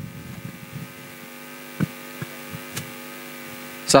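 Steady electrical hum from the public-address system, a constant tone with its overtones, with a few faint clicks about two seconds in.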